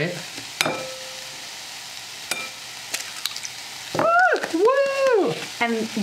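Asparagus and bok choy frying in oil in a skillet, with a steady sizzle. About half a second in there is a sharp crack as an egg is broken one-handed over a glass bowl, followed by a few lighter clicks. About four seconds in comes a drawn-out "ooh" of surprise that rises and falls.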